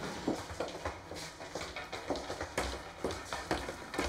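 Footsteps of people walking on a hard corridor floor, about two steps a second.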